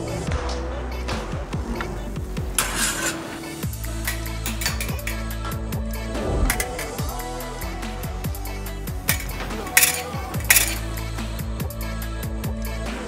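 Background music with a steady bass line, cut by a few sharp metallic clinks of fencing blades striking, the loudest two late on.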